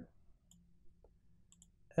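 A few faint computer mouse clicks.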